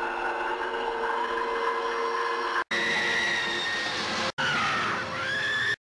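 Eerie film-soundtrack tones: shrill, sustained and wavering, with a pitch slide near the end. The sound is cut off abruptly twice, then stops dead.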